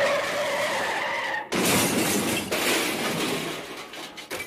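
Car tyre-skid sound effect: a screech that breaks off about a second and a half in, followed by two more stretches of rougher skid noise, the last fading near the end.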